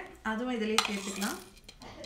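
Whole spices (cardamom pods, cloves, fennel seeds) tipped off a plate into a stainless-steel mixer-grinder jar, clinking and ticking against the steel, mostly in the second half. A voice is heard briefly in the first half.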